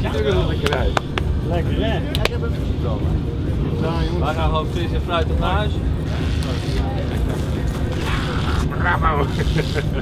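A rally truck's diesel engine idling with a steady low rumble under excited voices and whoops, with a few sharp clicks about one to two seconds in.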